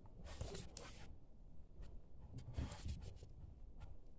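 Faint scratching and rustling of fingers handling and twisting thin wires on a small circuit board, in two short bursts, one near the start and one past halfway, with a few light clicks. The wires are being rejoined the other way round after being found reversed.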